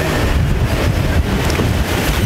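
Wind buffeting a clip-on microphone: a loud, steady rush of noise with a heavy low rumble and no clear tones or strokes.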